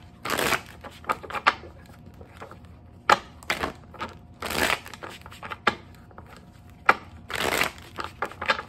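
A deck of cards being shuffled by hand: several short bursts of cards sliding and flicking against each other, with brief pauses between them.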